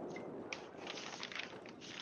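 Faint outdoor field ambience from a lacrosse game, with a few light clicks and taps, the sharpest about half a second in.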